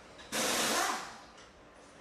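A short burst of hissing noise, fading out over about a second.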